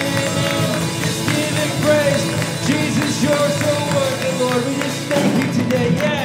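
Live worship band playing a song: acoustic guitar, piano and drums, with a long held, wavering melody line over the chords.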